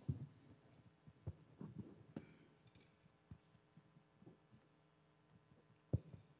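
Mostly quiet room with a few scattered soft thumps and knocks as people move about on the platform and take their places at the microphones, with one sharper knock just before the end.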